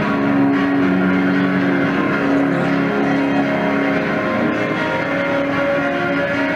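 Live rock band with electric guitar and bass playing a droning stretch of sustained, held chords, captured as a harsh, lo-fi minidisc audience recording.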